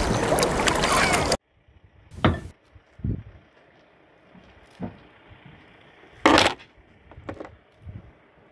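Loud splashing, churning water that cuts off abruptly about a second and a half in. After it comes a quiet stretch of scattered knocks and thumps as a lobster pot and lobster are handled on a boat's deck; the loudest knock comes about six seconds in.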